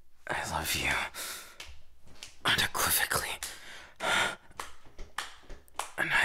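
A man's close-miked breathy whispering and gasps: several heavy breaths and breathy vocal sounds in a row, without clear words.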